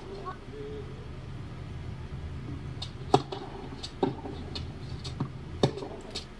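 A tennis rally on a hard court: sharp knocks of racket strikes and ball bounces, the loudest about three seconds in and three smaller ones through the last two seconds, over a steady low hum.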